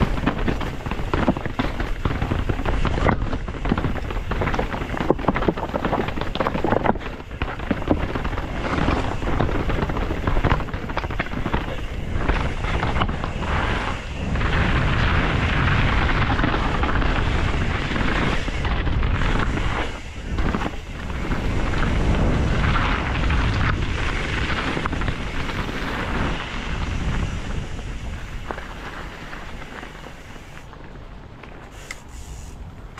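Canyon Strive enduro mountain bike riding downhill: tyres and suspension clattering and knocking over rocks, with wind rushing over the camera's microphone. About halfway through the knocking gives way to a steadier rolling rush over dirt, which eases off near the end.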